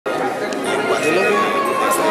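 A man talking amid the chatter of a crowded room.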